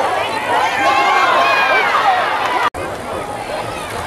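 A crowd of spectators yelling and cheering, many voices overlapping with no words standing out. The sound drops out for an instant about two-thirds of the way through, where the recording cuts.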